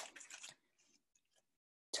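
Near silence in a pause between words, with a few faint short clicks in the first half second.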